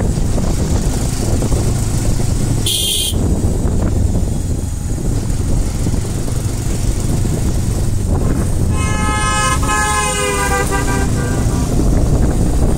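Steady low rumble of a vehicle driving along a winding mountain road, with a vehicle horn sounding: a short toot about three seconds in and a longer blast of about two seconds near the end, its pitch sagging as it stops.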